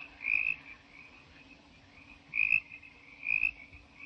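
Frogs chirping in a night ambience: a few short, high calls at irregular intervals, over a faint steady low hum.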